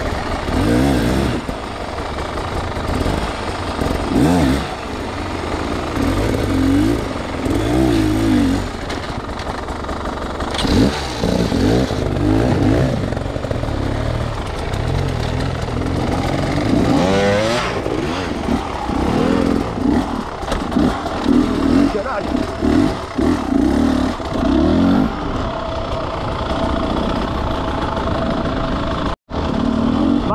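Enduro motorcycle engines blipping and revving in repeated bursts over a steady running rumble as the bikes are worked over rock, with a brief dropout about a second before the end.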